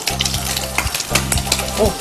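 Whole abalone pan-frying in hot olive oil in a nonstick pan, a steady sizzle full of sharp crackling pops.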